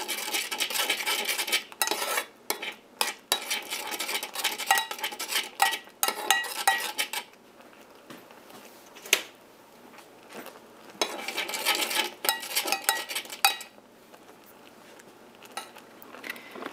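A spoon scraping and clinking around a stainless steel saucepan, stirring cornstarch mixture as it cooks so no clumps form. The stirring runs for about seven seconds, pauses with a single clink, then starts again briefly around eleven seconds in.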